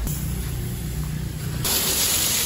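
A low hum, then near the end a sudden loud hiss as a pressure-washer jet starts spraying the dismantled bottle-jack parts on the concrete.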